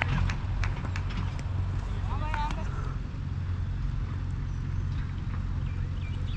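Steady low wind rumble on a helmet-mounted GoPro's microphone, with a short distant shout about two seconds in.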